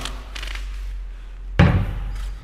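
A drift-trike wheel set down on a metal workbench with a single thump about a second and a half in, over a low steady hum.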